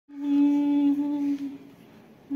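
Humming in a music track: one steady, held note lasting about a second and a half before it fades away.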